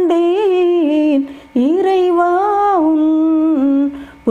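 A woman's unaccompanied voice carries a slow Tamil devotional melody in two long held phrases, the notes wavering and gliding, with a short breath about a second and a half in.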